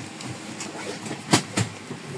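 Steady hum inside the cabin of a parked turboprop, with two sharp knocks about a quarter second apart a little past a second in.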